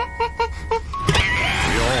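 Jack-in-the-box plinking a few tune notes as it is cranked, then springing open about a second in with a sudden whoosh and a wavering, wobbling spring sound.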